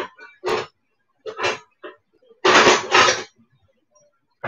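Kitchenware being handled on a counter: a few short knocks and clatters, then a louder double clatter lasting most of a second about two and a half seconds in.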